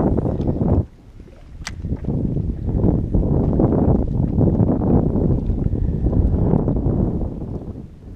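Wind buffeting the microphone in gusts: a short gust in the first second, then a longer one that builds from about two seconds in and dies away near the end.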